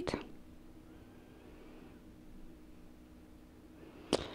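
Near silence: quiet room tone with a faint steady hum, after the last word of speech trails off at the very start.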